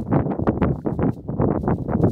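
Hay bedding rustling and crackling under the hooves of young goat kids scrambling and hopping, a rapid, irregular run of short crunches and steps.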